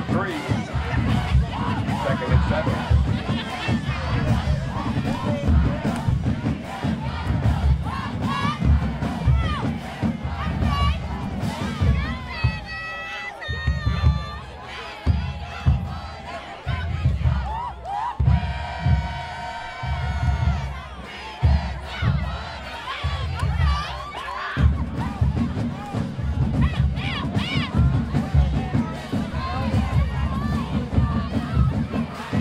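A high school marching band's drum section beating a loud, driving cadence in the stands, with band members and the crowd shouting and chanting over it. The drums pause briefly near the middle, and a held note sounds for a couple of seconds a little later.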